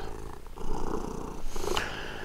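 Domestic cat purring, a quiet low rumble.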